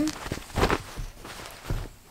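Stretchy seamless workout shorts rustling as they are handled, in two brief bursts about a second apart.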